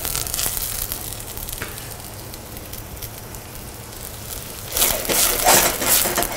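White asparagus pieces frying in butter in a saucepan: a steady sizzle that swells to a louder burst of sizzling about five seconds in.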